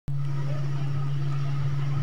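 A steady, unchanging low hum with a faint noisy background.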